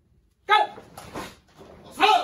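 A spoken command 'Go!' about half a second in, then a karate kiai near the end: a short, sharp shout as the stepping punch (oi-zuki) lands.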